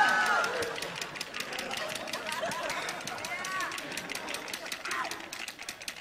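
A hand-shaken rechargeable flashlight being shaken hard: a fast, regular clacking as its insides knock back and forth, with faint voices underneath.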